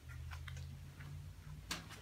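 Faint scattered ticks and clicks over a low steady hum, with one sharper click near the end.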